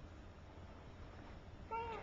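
Low steady room hum, then, near the end, a short high-pitched vocal squeak from a person, rising in pitch.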